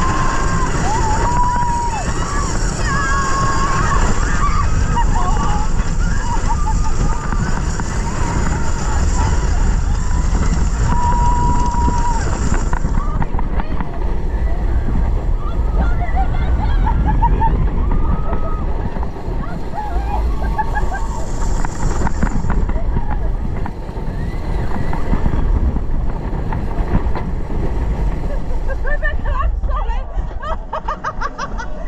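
Wind buffeting the on-ride camera and a Vekoma motorbike launch coaster train rumbling along its track at speed, with riders screaming and whooping over it. Near the end the rush dies down as the bike slows back into the station.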